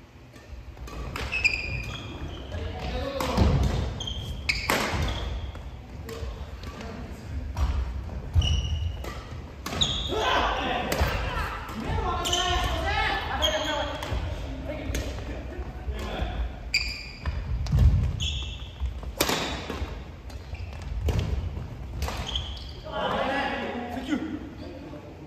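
Badminton rally in a large gym: rackets striking the shuttlecock, sneakers squeaking and feet thudding on the wooden floor, with the sound echoing in the hall. Players call out to each other at times.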